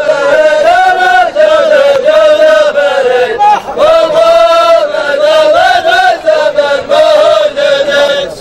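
A group of men chanting in unison: a traditional Dhofari men's chant, sung as one melody line in short repeating phrases without pause.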